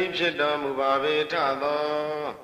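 A single man's voice chanting a Buddhist recitation in long, held, melodic tones, with short breaths between phrases.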